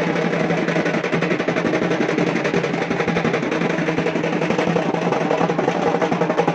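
Music dominated by fast, continuous drumming that runs without a break at a steady loudness.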